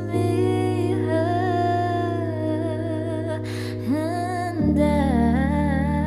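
A woman singing long, wavering held notes without clear words over sustained backing chords. The backing chord changes to a new one about two-thirds of the way in.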